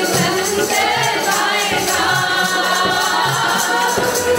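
Sikh Gurbani kirtan: a group of voices singing a hymn together, accompanied by harmonium and tabla, with a fast, even beat.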